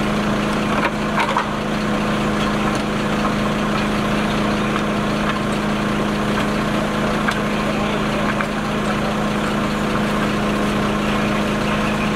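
Fire truck engine running steadily at idle, a constant low hum, with a few faint knocks about a second in.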